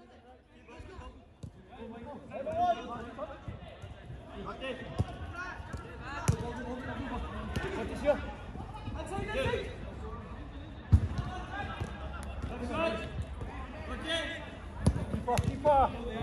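A football being kicked on an artificial-grass five-a-side pitch, heard as sharp thuds several times, the loudest about eleven seconds in, among players' shouts and calls.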